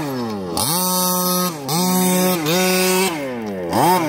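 Small two-stroke engine of a gas-powered 1/5-scale Baja-style RC truck revving in repeated throttle bursts: it climbs, holds a steady high pitch for about a second, drops back and climbs again about four times.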